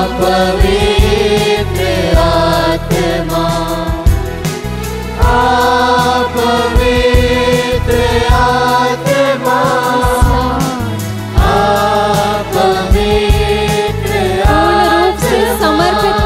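Hindi Christian worship song: voices singing long, drawn-out phrases over steady instrumental backing.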